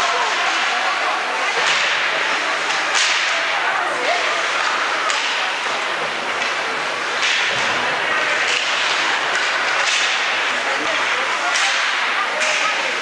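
Ice hockey play on a rink: skate blades scraping and carving the ice and sticks clacking on the puck, with a sharp scrape or crack every second or two over a steady hum of arena noise and faint voices.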